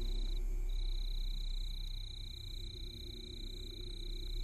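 Quiet ambient opening of a stage dance soundtrack: a steady high-pitched trill over a low rumble, the trill breaking off briefly about half a second in.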